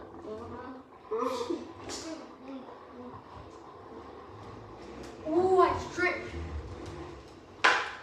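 Children's voices: indistinct exclamations about a second in and again around five to six seconds in, followed by a short sharp sound near the end.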